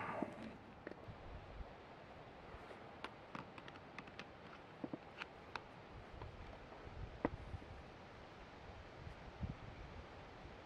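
Faint, scattered small clicks and taps of a screwdriver and wire being worked into the terminals of a plastic AC circuit breaker, with a sharper click about seven seconds in.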